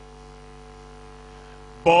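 Steady electrical hum made of several fixed tones in a pause between spoken phrases. A man's preaching voice comes back near the end.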